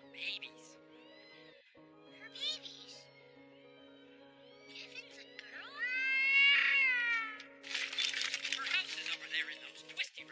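Film score of held orchestral chords under a series of high, gliding, meow-like animal calls from a cartoon creature. The loudest call, about six seconds in, rises and then falls over about a second and a half, and a cluster of quick chattering calls follows.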